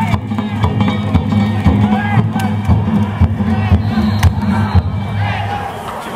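Danjiri festival music, drums and struck gongs playing, with crowd shouts over it.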